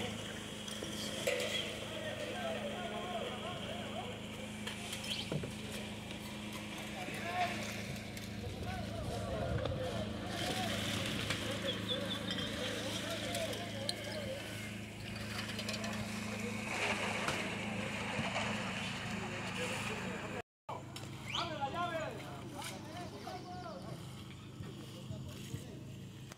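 Indistinct chatter of several people in the background over a steady low engine hum. The sound drops out briefly about 20 seconds in.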